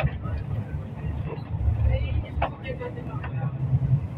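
Low, steady rumble of engine and road noise heard from inside a moving vehicle, with faint voices and a few light knocks over it.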